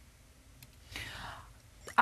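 A short, soft breath, a person drawing in air about a second in, in an otherwise near-silent pause between speakers.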